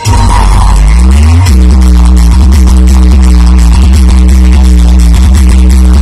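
Hard-bass music played loud on a DJ sound system: a tone rises in pitch for about half a second, then a heavy bass drone holds steady with a few higher tones above it.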